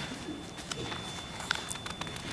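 Quiet room tone in a pause between spoken words, with a faint steady high whine and a small click about one and a half seconds in.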